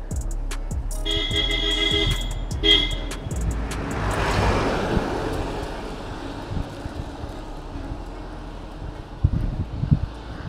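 A vehicle horn tooting in a quick stutter of beeps about a second in, and once more briefly near three seconds, over the fading end of background music. A vehicle then passes with a swelling rush, and steady wind and road noise on the bike-mounted camera fills the rest.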